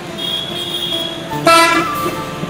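Vehicle horns from road traffic: steady horn tones, then one short loud honk about one and a half seconds in.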